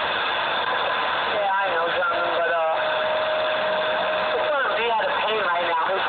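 CB radio receiving distant skip: a steady hiss of band static with warbling, garbled voices fading in and out, and a steady whistle for about a second and a half in the middle.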